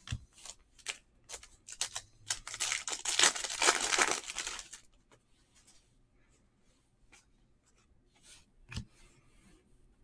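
A foil trading-card pack is ripped open: a few light taps of cards being set down, then about two and a half seconds of wrapper tearing and crinkling. After that come only faint clicks of cards being thumbed through, with one soft knock near the end.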